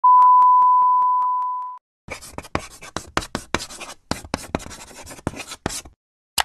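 A steady 1 kHz test-tone beep that goes with colour bars, held for almost two seconds and cut off. After a short pause comes a quick run of irregular clicks and crackles.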